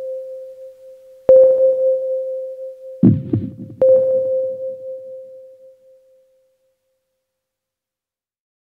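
Final notes of an electronic track on a Roland MC-101 groovebox and TR-6S drum machine: a steady mid-pitched synth tone, struck again twice with sharp attacks, with a few low booming hits about three seconds in. The tone dies away about six seconds in.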